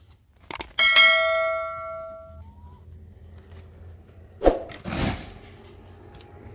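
A large metal basin is struck once about a second in and rings with several clear tones that fade over about a second and a half. Two duller thumps follow near the end as the basin is tipped to empty its mud.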